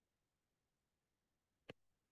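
Near silence, broken by a single faint short click near the end.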